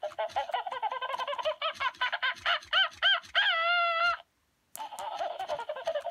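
Gemmy 'Buster the Shameless' animatronic monkey toy laughing through its small tinny speaker: a rapid, cackling, hooting laugh that climbs in pitch and ends in one long drawn-out call about three and a half seconds in. It cuts out briefly, then breaks into more quick chattering laughter near the end.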